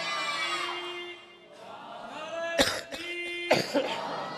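Two short, sharp coughs from a man in the seated audience, about a second apart, over faint low voices.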